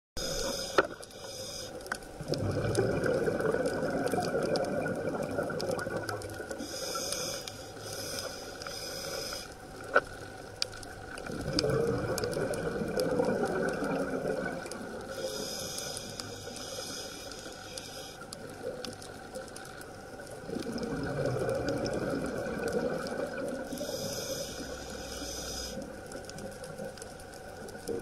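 Scuba diver breathing through a regulator underwater: a hissing inhale about every eight seconds, each followed by a few seconds of rumbling exhaled bubbles. Two sharp clicks, one near the start and one about ten seconds in.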